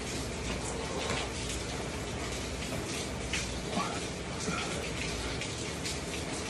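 Steady hiss of heavy rain pouring down outside the garage, with a few faint knocks and scuffs as a man drops into a burpee.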